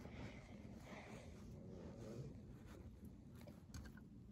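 Near silence: faint room tone with light rustling from toy figures being handled on carpet, and a few soft clicks near the end.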